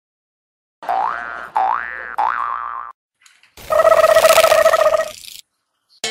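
Edited-in cartoon sound effects: three quick sweeps rising in pitch about a second in, then a loud buzzing electronic tone with hiss lasting about two seconds.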